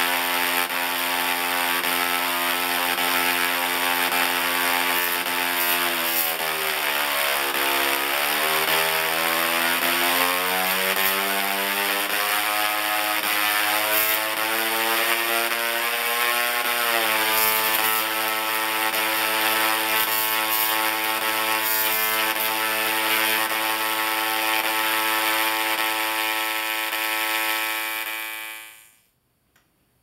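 Dual-resonant solid-state Tesla coil (DRSSTC) firing long sparks with a loud, crackling buzz. Its pitch holds, drops about six to eight seconds in, climbs back up over the next several seconds, then holds again, and the buzz stops suddenly near the end.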